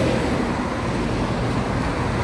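Road traffic passing close by on a busy street: a steady rush of car engines and tyres.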